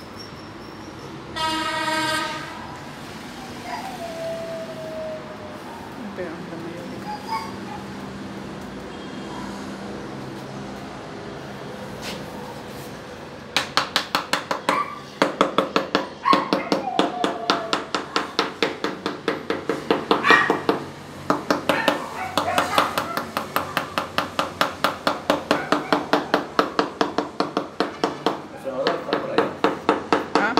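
Rubber mallet tapping a ceramic wall tile down into fresh tile adhesive: quick, even knocks about three a second with brief pauses, starting about halfway through. A short high-pitched whine is heard near the start.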